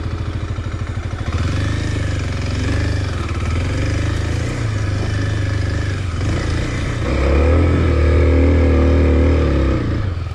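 Kawasaki KLX250 single-cylinder four-stroke dirt-bike engine ticking over at idle, then pulling steadily at low revs as the bike rides off along a trail. About seven seconds in, the revs rise and hold higher and louder for a few seconds, then drop back to idle just before the end.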